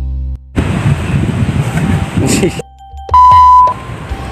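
A ringing low music chord dies out in the first half second, followed by rough outdoor noise with a voice. About three seconds in comes a loud, steady high beep lasting about half a second, a censor bleep over the outtake audio.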